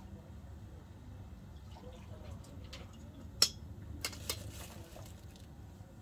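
A metal spoon clinks sharply once against a stainless-steel spice box about three and a half seconds in, followed by a couple of lighter ticks, over a low, steady background noise.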